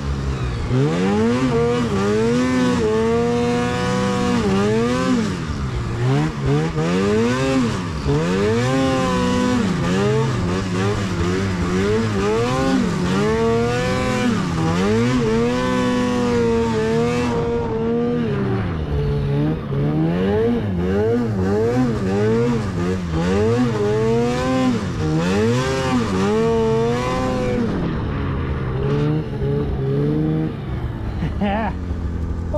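Arctic Cat Catalyst 600 two-stroke snowmobile engine under way in powder, its pitch rising and falling again and again as the throttle is worked.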